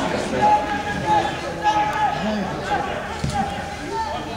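Indistinct voices of people talking and calling out, with no words picked out.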